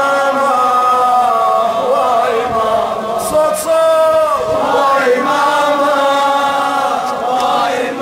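A man chanting a mournful Shia lament (latmiya) in long, held, wavering notes, sung into a handheld microphone.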